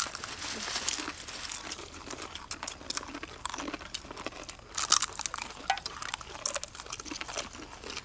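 Dry crackling and crunching as hands rummage through a basket of crisp fried green banana slices and people bite into them. The crackles come irregularly throughout and are loudest about five seconds in.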